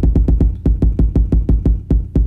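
A sampled 808 drum hit, heavy in the low end, retriggered by a held pad in a perfectly even rapid stream of about eight hits a second: note-repeat at double time, locked to a 120 bpm tempo.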